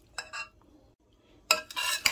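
Spoon stirring a chopped potato salad in a bowl: a few light clinks and scrapes about a quarter second in, then a louder scrape of the spoon through the salad near the end.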